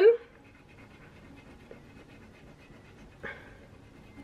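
A coin scratching the silver coating off a paper scratch-off card: a faint, rapid rasping of many small scrapes, with one slightly louder stroke about three seconds in.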